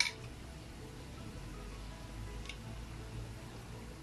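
Soft background music over the faint hiss of batter-coated cempedak pieces deep-frying in oil. A sharp click comes right at the start, and a smaller one about halfway through.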